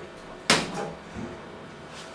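A single sharp clunk from a KONE elevator car just after its doors have shut, followed by a couple of softer knocks, as the car gets set to move off.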